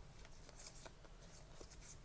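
Faint rustling and light ticks of Pokémon trading cards sliding against each other as they are moved through a handheld stack.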